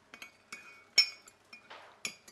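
Cups and dishes clinking lightly: several separate clinks, each with a short ring, the loudest about a second in.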